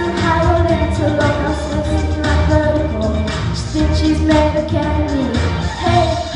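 A boy singing a pop song into a microphone with instrumental accompaniment and a steady low beat.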